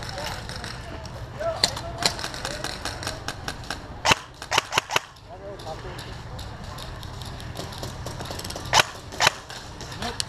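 Airsoft guns firing single sharp shots: a pair about a second and a half in, a quick run of four around four to five seconds in, and two more near the end, with lighter ticks between.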